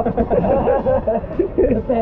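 Men's voices talking, with chuckling.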